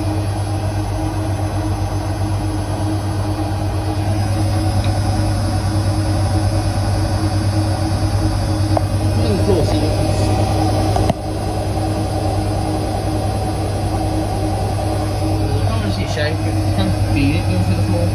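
Bendix front-loading washing machine on its final spin, drum turning fast with a steady low hum, spinning an unbalanced load. The level dips sharply for a moment about eleven seconds in.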